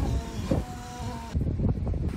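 Wind rumbling low and unevenly against the microphone, with a few faint steady tones behind it in the first second.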